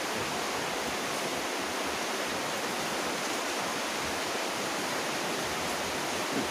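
Steady, even hiss of background noise with no distinct sounds standing out of it.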